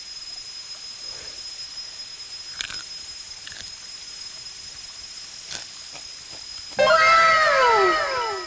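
A beetle crunched between the teeth in a few faint, separate chews, over a steady high insect whine. About seven seconds in comes a loud sound of several pitched tones that slide downward together for about a second and a half.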